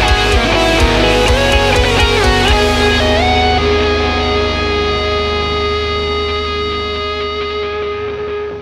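Distorted Ibanez RG8 eight-string electric guitar playing a fast solo line over a metal backing track with drums. About three seconds in, the drums stop and the guitar bends up into one long held note that rings over a sustained chord.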